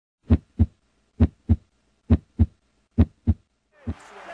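Heartbeat sound effect: four double thumps (lub-dub), about one pair a second, then a single fainter thump near the end.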